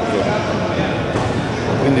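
Indistinct voices and background chatter in a large indoor sports hall, with no clear words.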